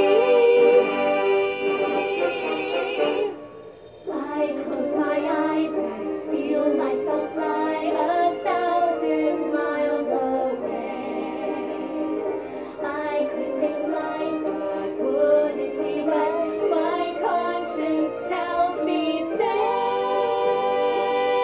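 Musical soundtrack song playing from a CD player: a long held sung note that ends about three seconds in, a brief dip, then a busy instrumental passage.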